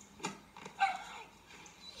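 A dog giving one short bark about a second in, after a faint click, played through a laptop's speakers and picked up in a small room.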